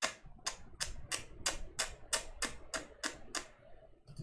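A computer mouse scroll wheel clicking notch by notch as a page is scrolled: about eleven short, evenly spaced clicks at roughly three a second, stopping shortly before the end.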